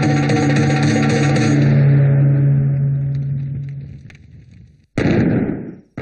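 Film score music holding a long low note that fades away over about four seconds. About five seconds in, a sudden loud burst cuts in and dies away within a second.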